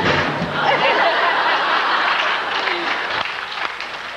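Concert audience applauding, thinning out after about three seconds, with scattered voices and laughter.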